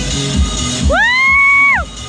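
A person's loud "woo!" whoop, one high call that rises, holds and falls away about a second in, over electronic dance music with a steady kick-drum beat.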